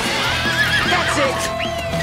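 Cartoon sound effect of a horse whinnying: a high, wavering call through the first half, then a short rising-and-falling call near the end, over a held music tone.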